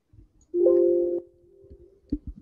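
A short chime-like tone: two steady notes sounding together for about two-thirds of a second, stopping abruptly, then a faint lingering tail.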